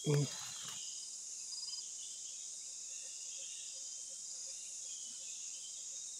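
Steady, high-pitched drone of a rainforest insect chorus.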